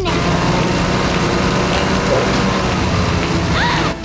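Cartoon motor sound effect: a machine running steadily with a dense rushing noise over a low hum, and a short rising whistle near the end.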